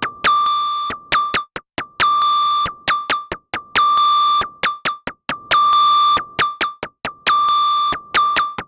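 Moog DFAM analog percussion synthesizer running its step sequencer: a repeating pattern of short blips and longer held tones, all on one high pitch, with a hiss of noise over the longer tones. The pattern comes round about every 1.75 seconds.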